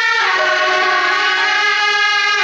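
Traditional temple-festival music led by loud reed horns of the suona type, holding long sustained notes, with a step in pitch just after the start.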